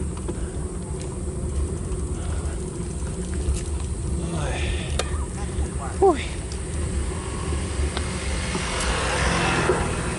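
Steady low rumble of wind and road noise on a bicycle-mounted camera during a slow climb, with brief voices of nearby riders around four to six seconds in.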